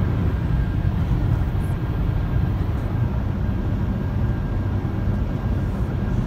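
Steady low rumble of road and engine noise inside a moving car's cabin.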